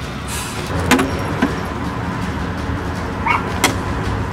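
One-handed slingshot shooting: two sharp snaps, about a second in and again near the end, over a steady low rumble.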